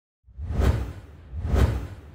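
Two whoosh sound effects of a logo intro, about a second apart, each swelling up with a deep rumble beneath and then falling away; the second fades into a low tail.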